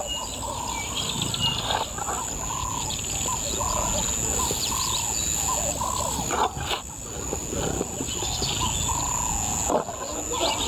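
African lions growling as they feed on a zebra carcass, with a few louder rough snarls. Behind them birds chirp repeatedly over a steady high insect drone.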